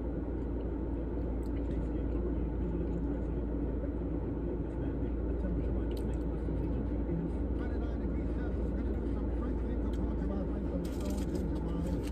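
Steady low rumble of an idling car engine heard inside the car's cabin, with rustling and crackling near the end.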